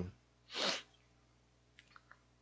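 A man's short hum right at the start, then about half a second in a single brief, sharp breath noise, a quick puff of air lasting well under half a second.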